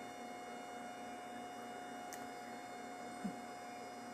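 Steady electrical hum with thin, steady whining tones from running bench electronics, and one faint click about two seconds in.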